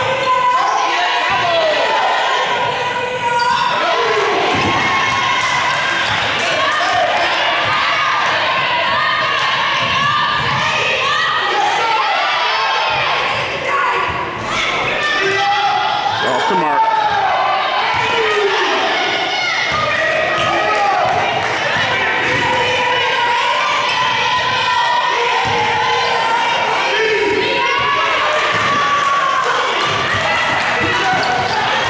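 Basketball being dribbled and bouncing on a gym's hardwood floor during live play, with players and spectators calling and shouting throughout, echoing in the large gym.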